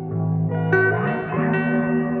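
Slow instrumental background music of sustained, echoing notes; a new note enters and a low pitch slides upward about a second in.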